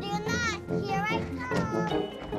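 A young girl's high voice making about three wavering calls, over steady background music.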